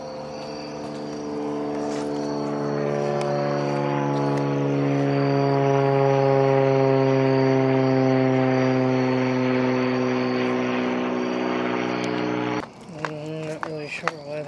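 A small airplane flying overhead: a steady engine hum that grows louder toward the middle and slowly falls in pitch as it passes, then stops abruptly near the end.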